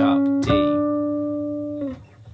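Archtop jazz guitar picking the last single notes of a D harmonic minor scale: one note carries on, then a slightly higher note about half a second in rings for over a second and fades away.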